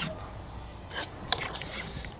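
A metal spoon stirring dry flour and polenta in a metal bowl: soft scraping, with a few light clicks of the spoon against the bowl about a second in.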